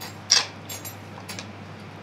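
A single short clink of kitchen bowls being handled on the counter about a third of a second in, then a fainter tick, over a low steady room hum.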